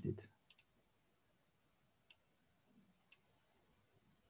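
A few faint, sharp computer-mouse clicks in a quiet room: a quick pair about half a second in, then single clicks about two and three seconds in, as Run is chosen from an IDE's right-click menu to launch a program.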